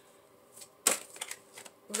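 A single sharp click just under a second in, with a few fainter ticks around it, over quiet room tone.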